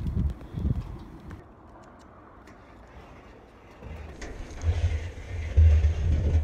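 A quiet stretch, then from about four seconds in a plastic trash-can liner rustling with low handling rumbles as the bag is gripped at the rim of the bin.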